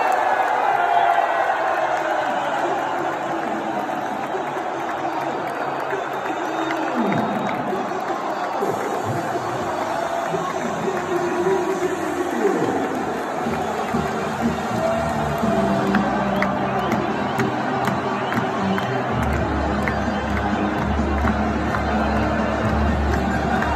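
Large stadium crowd cheering and singing, with music playing over it; a deep steady bass comes in near the end.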